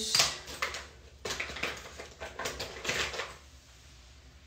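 Makeup products being rummaged through: an irregular run of small clicks, knocks and rustling for about three seconds, fading out near the end.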